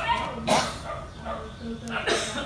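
A dog barking, loudest about half a second in, with people talking in the background.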